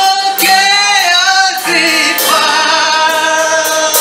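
Gospel singing in church: a lead singer on a microphone with other voices joining, moving through long held notes.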